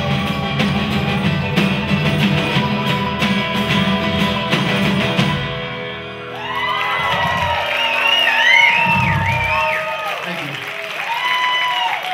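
Live folk-rock band playing, with strummed acoustic guitar, mandolin and drums. About halfway through the full band drops away to a thinner passage with sliding, wavering high notes.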